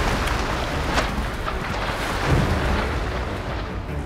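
A crocodile lunging out of the water at drinking wildebeest: heavy, continuous splashing with a deep rumble as the wildebeest scramble back, and a few sharp knocks, one about a second in.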